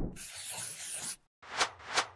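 Logo-animation sound effects: a soft rushing noise for about a second, then two quick whooshes near the end.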